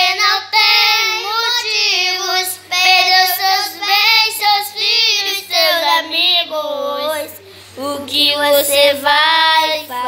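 Two children, a boy and a girl, singing a gospel song in Portuguese, with a brief breath pause a little before the end.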